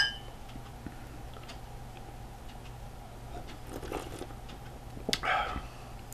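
Two tall beer glasses clinked together in a toast right at the start: one short, sharp clink with a brief glassy ring. After it comes a quiet room with a steady low hum and a few faint sipping sounds.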